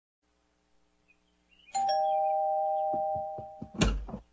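Two-tone ding-dong doorbell chime, struck once, its two notes ringing on and slowly fading. Near the end come a few soft knocks and a louder thump as the front door is opened.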